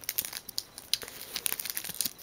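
Sheets of nail and body tattoo transfers being handled and flipped through, crinkling in a run of small irregular crackles.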